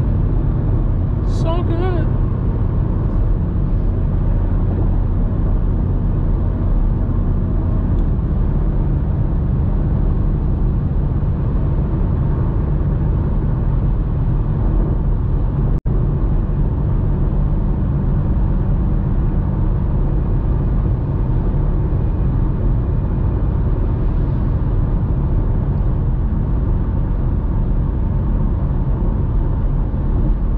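BMW M5 Competition cruising at steady highway speed, heard from inside the cabin: a constant low engine drone under tyre and road noise. The sound cuts out for an instant about halfway through.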